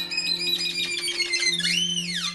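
Instrumental break in an Albanian folk song: a quick run of high-pitched notes over a steady low drone, ending in a note that slides up and falls away.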